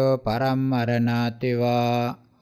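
A male voice chanting Pali scripture in a level, monotone recitation, held on one pitch with two brief breaks between phrases.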